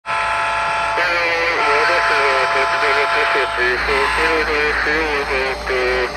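A person's voice talking, the words mostly unclear, over a steady, even drone.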